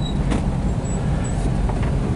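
Cabin noise of a 1977 Volkswagen Sunliner campervan (T2 Kombi) on the move: a steady low rumble of its rear air-cooled flat-four engine mixed with road noise.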